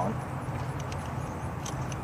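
A few faint plastic clicks as a wiring connector is handled and pushed onto a car's throttle position sensor, over a steady low outdoor rumble.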